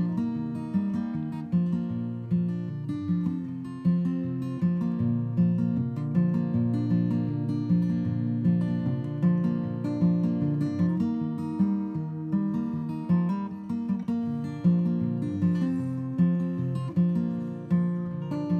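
Solo acoustic guitar playing an instrumental break, with no singing: steady picked and strummed chords in an even, repeating rhythm.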